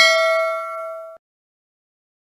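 A bell-like ding sound effect, several tones ringing and fading, that cuts off abruptly just over a second in.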